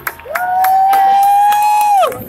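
One long cheering whoop from a person close to the microphone. It swoops up into a held note and falls off at the end, with scattered claps around it.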